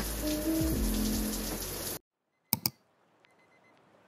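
Shower water spraying in a shower stall under soft background music; both cut off suddenly about two seconds in. Two quick clicks follow, then faint hiss.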